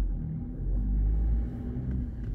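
Car engine and road rumble heard from inside the cabin as the car pulls away from a stop sign, a low steady drone with a faint engine hum.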